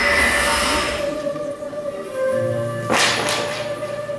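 Stage soundtrack music with sustained tones, opening under a loud whooshing noise that fades out about a second in. About three seconds in comes one sharp swish, a weapon-swing sound effect for the staged sword-and-spear fight.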